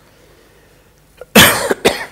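A man coughing close to the microphone: one loud cough about one and a half seconds in, then a shorter second cough just before the end, after a quiet pause.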